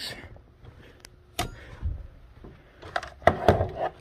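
Knocks and clicks of cordless-tool battery packs and tools being picked up and handled: one sharp knock with a thump about a second and a half in, and a cluster of clicks near the end.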